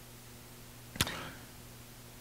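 Quiet pause with a faint low steady hum, broken by a single sharp click about halfway through.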